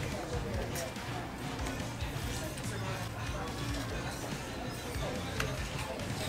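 Background music over restaurant room noise with indistinct chatter, and a few sharp clinks of forks on plates.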